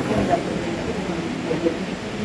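Faint, indistinct speech in a large hall, between louder stretches of a man's talk.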